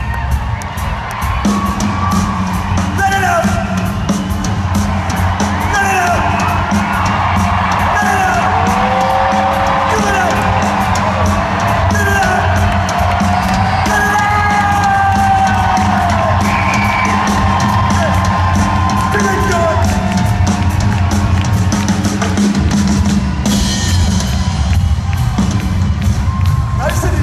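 Live rock drum solo on a full drum kit, a dense run of rapid hits heard through the arena PA from the audience, with whoops and yells over it.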